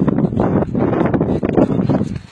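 Wind buffeting a handheld camera's microphone outdoors, a loud, continuous rumbling rush with no clear pitch.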